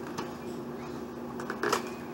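Plastic VHS clamshell case being handled: a couple of light clicks, then a short run of louder clicks and rattles near the end.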